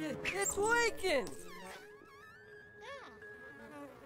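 Cartoon character voices: wordless cries and grunts in a scuffle during the first second or so, then quieter cartoon sound effects over a thin steady tone, with a short up-and-down whistle-like glide about three seconds in.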